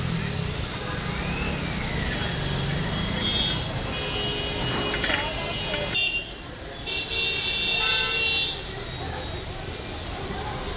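Busy market-street ambience of traffic and indistinct voices, with a vehicle horn honking for about a second and a half near the end.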